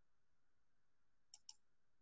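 Near silence broken by two quick faint clicks about a second and a half in, a computer mouse being clicked to change slides.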